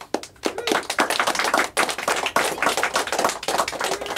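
Audience applauding at the end of a song, beginning with a few scattered claps and filling out into steady clapping within about a second, with individual claps still distinct.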